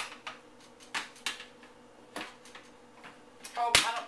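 Dark metal loaf pan knocking and clattering on the counter as it is handled with a towel: a few light knocks, then a louder clatter near the end.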